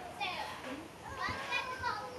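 Children's voices chattering and calling, high-pitched and overlapping, with no clear words.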